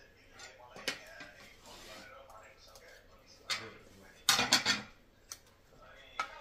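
Tableware clinking and scraping: a serving spoon scooping rice from a rice cooker's pot onto a ceramic plate, and a spoon on a dinner plate. There are a few separate clinks and a short, loud cluster of clinks a little past the middle.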